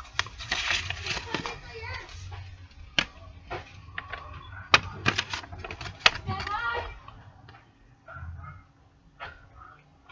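Folded paper pamphlet being pulled out and unfolded by hand: crinkling and rustling with sharp crackles, busiest in the first seven seconds and quieter after.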